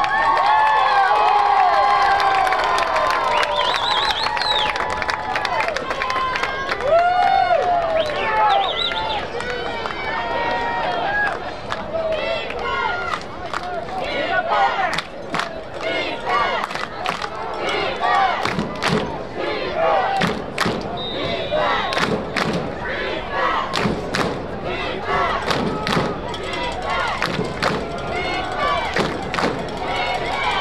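Football crowd and sideline voices shouting, calling and cheering. Through the middle and latter part there are many sharp claps and knocks.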